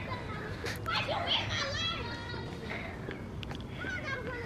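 Children's voices calling and shouting at a distance, too far off for words, loudest between about one and two and a half seconds in, with a few faint sharp clicks.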